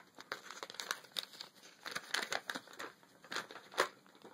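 Paper being handled and unfolded, crinkling in a run of irregular short crackles.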